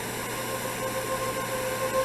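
Steady hissing noise with a low hum and faint steady tones underneath, even in level throughout.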